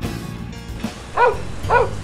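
A dog giving two short, high yips about half a second apart, each rising and then falling in pitch.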